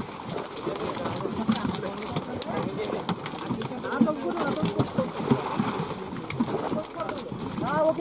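Several men's voices talking in the background, over frequent small slaps and clicks from live catla fish flapping on the tarp and being handled into plastic crates.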